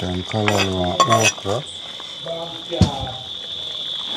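A woman talking, over a steady high-pitched insect drone, with a single clink of a metal spoon against the cooking pot about three seconds in.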